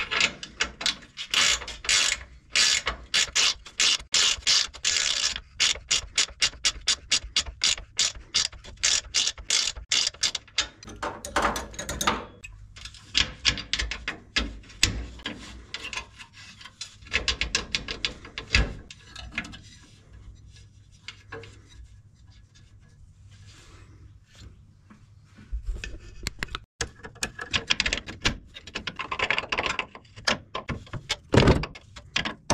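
Ratcheting wrench clicking in quick runs as it tightens an oil cooler line fitting on a new radiator. The clicking thins out about halfway through, goes quiet for a few seconds and picks up again near the end.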